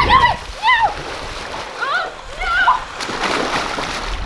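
High-pitched wordless shrieks from a woman as a bungee cord yanks her back down a wet slip-and-slide, then a splash as she plunges into a swimming pool about three seconds in.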